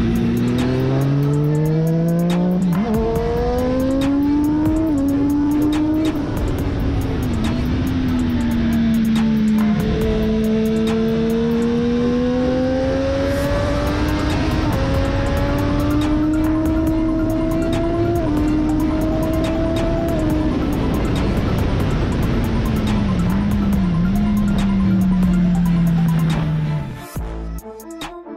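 Racing motorcycle engine heard from an onboard camera, its note climbing and falling as the bike accelerates and brakes through corners, with brief dips at gear changes. A steady rush of wind noise runs under it.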